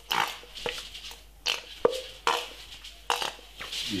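Squeeze bottle of tomato ketchup squirting and sputtering in several short spurts, with air spluttering through the nozzle as it is squeezed.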